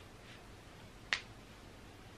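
Quiet room tone with a single sharp click a little over a second in.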